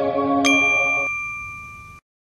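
Music for a TV channel's logo ident: a sustained synth chord stops about a second in, while a bright, bell-like ding struck about half a second in rings on and fades away.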